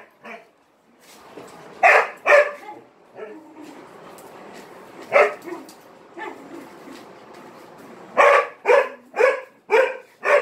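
A dog barking in short, loud barks: two close together about two seconds in, a single bark about five seconds in, then a quick run of four near the end, about two a second.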